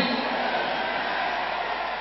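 Steady hiss of background noise in the hall, fading slightly toward the end.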